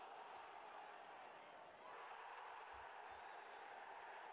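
Near silence: a faint steady hiss, with a couple of faint low thuds near the end.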